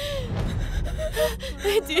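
A young girl crying, with gasping sobs and short, broken whimpers.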